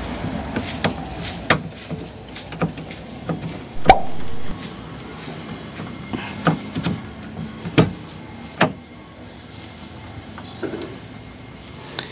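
Scattered plastic clicks and knocks as a replacement inner door handle is pressed and pulled into the plastic door trim panel, the strongest knocks about four seconds in and just before eight seconds.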